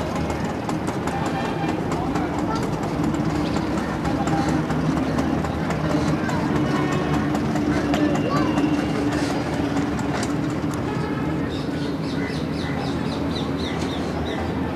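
A steady low hum with indistinct voices, and faint scattered clicks and chirps over it.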